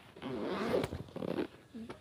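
Rustling and handling noise as a black soft camera case and its packaging are handled, with a single sharp click a little under a second in.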